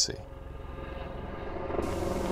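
Helicopter rotor beating in a rapid, even pulse over a low rumble, growing steadily louder.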